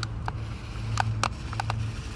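Remote-control toy monster truck driving over dirt: a low steady hum with about six sharp clicks and knocks scattered through it.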